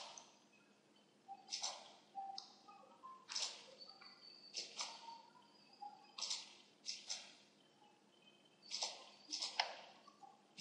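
Computer mouse clicking: a dozen or so short, faint clicks at uneven intervals.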